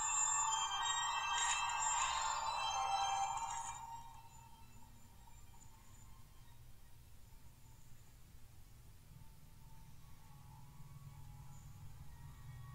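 Music of held, ringing tones from a short film's soundtrack, playing through a phone's speaker. It is loud for about the first four seconds, then the volume is turned right down and it goes on faintly.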